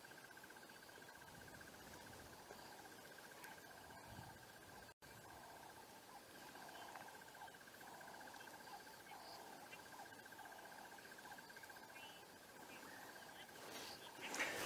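Faint, steady insect trill: a single high note of very rapid pulses, over quiet outdoor background. The sound cuts out completely for an instant about five seconds in.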